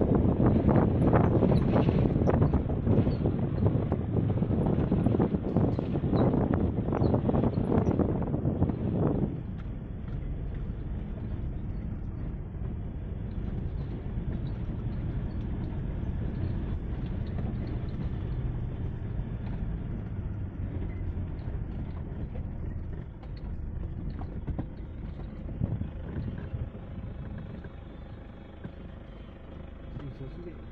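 A car driving on a rough dirt mine road, heard from inside: gusty wind buffeting the microphone at an open window for the first nine seconds or so, then a sudden drop to a steadier, quieter low road and engine rumble in the cabin.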